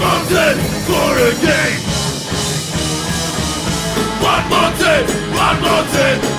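Oi/streetpunk band playing live with electric guitars, bass and drums, loud and steady, with vocals in the first second or two and again near the end.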